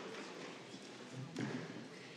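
Faint background voices and room noise, with a soft knock about one and a half seconds in.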